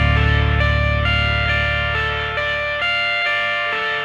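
Rock music: a guitar picking a melody of single notes over a low held note that fades out partway through.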